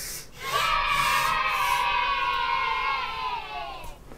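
Chalk squeaking on a chalkboard as a line is drawn: one long, high squeal lasting about three seconds, its pitch sagging slightly before it fades out near the end.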